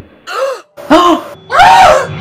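Shocked cries from people: three short, loud wordless exclamations, each rising then falling in pitch, the last the loudest and longest.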